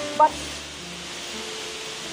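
Steady rush of a waterfall plunging into its pool, under soft background music of long held notes.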